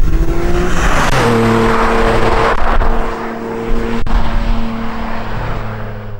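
Porsche 718 Cayman GT4's 4.0-litre naturally aspirated flat-six engine at high revs on track. The note climbs for about a second, steps up to a higher steady pitch, and holds there, easing a little after about three seconds.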